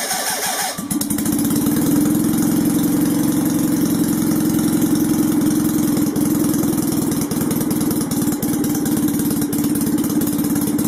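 Citroën 2CV air-cooled flat-twin engine on a test bench, firing up within the first second and then running steadily at idle.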